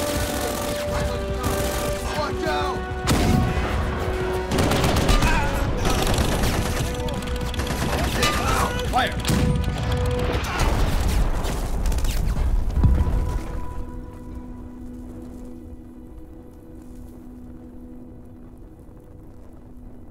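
Battle sound effects: heavy, continuous gunfire and explosions over an orchestral-style score, with the single loudest blast about 13 seconds in. After that the shooting stops and only the music's sustained notes go on, quieter.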